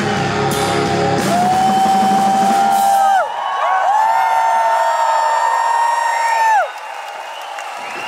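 Live punk rock band closing a song. The full band plays for about a second, then two long held notes that slide in and fall away ring out over a thinning bottom end. Near the end the sound drops abruptly to a much quieter level.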